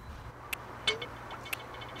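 A few faint, irregular light clicks over a low steady hum.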